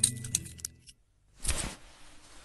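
A quick run of small metallic jingling ticks, then, after a brief silence, a short whooshing rush about one and a half seconds in.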